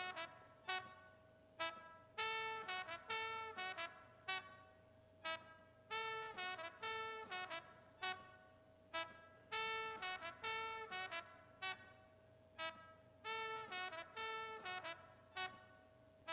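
Recorded trumpet track played through a mixing console's noise gate as its attack time is raised from about 18 to 99 ms. Short brass notes come out choppy, with the gate closing down between them, and the front-end transient of each note is increasingly cut off. A faint steady pitch runs underneath.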